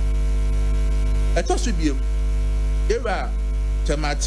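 Loud, steady electrical mains hum on the broadcast audio, a deep drone with a ladder of steady overtones above it. Two brief bits of a voice break through, about one and a half and three seconds in.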